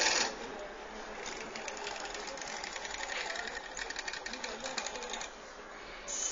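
Small electric motor drive of an Arduino-controlled model warehouse cart running in a fast, even clatter as it moves an object to its storage box; it starts about a second in and stops a little after five seconds.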